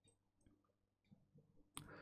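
Near silence, then a single sharp click near the end: a computer mouse button being clicked.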